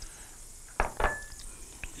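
Two quick sharp metallic clinks of a utensil against a stainless steel saucepan, the second leaving a brief ringing tone, followed by a couple of faint ticks.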